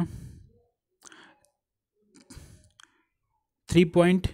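A pause in a lecturer's speech: a drawn-out vowel cuts off into a breathy exhale, then a few faint mouth clicks, and talking resumes near the end.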